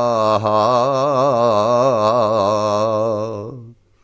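A solo male voice sings a traditional Greek folk song, holding one long, wavering, ornamented note that fades away about three and a half seconds in.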